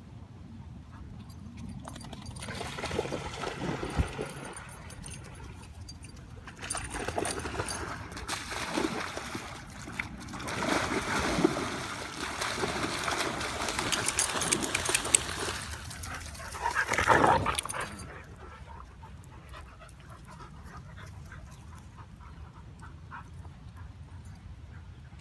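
Several dogs splashing as they run and swim in shallow pond water, with occasional barks. The splashing dies away about eighteen seconds in.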